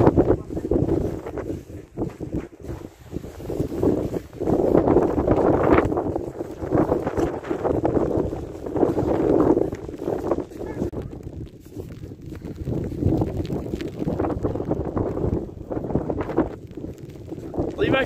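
Wind buffeting the phone's microphone in loud, uneven gusts that surge and ease over a few seconds at a time.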